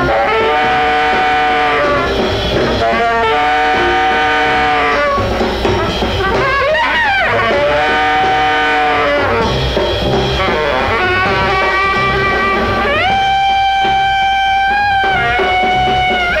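A band playing live: a lead line of long held notes, sweeping down and back up about seven seconds in and stepping up in pitch near thirteen seconds, over a steady bass and drum pulse.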